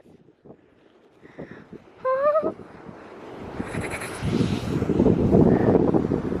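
A short, high shouted call about two seconds in, then wind buffeting the microphone, a low rumble that grows louder toward the end with scattered knocks.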